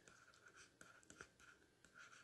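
Very faint stylus strokes on a digital writing tablet: light scratches and small ticks of handwriting, barely above silence.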